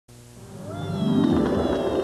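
Opening theme music fading in and swelling to full level within the first second, a thick chord of low sustained tones with some gliding notes above.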